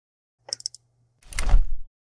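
Animated outro sound effects: a few short sharp clicks about half a second in, then a louder whoosh with a deep thud lasting about half a second.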